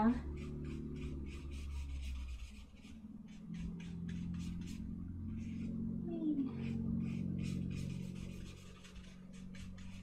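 Small paintbrush dabbing and dragging oil paint across paper in a run of short, soft scratchy strokes, several a second, over a low steady hum.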